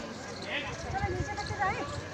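Background voices of people talking around the speaker, one rising to a high call near the end, with a few low knocks in the middle.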